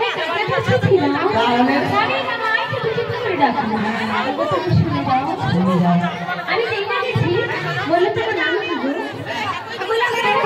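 Spoken dialogue from the performers, amplified through a microphone and PA, with several voices overlapping in chatter.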